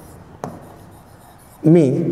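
Chalk writing on a blackboard: a sharp tap as the chalk meets the board about half a second in, then faint strokes as a word is written.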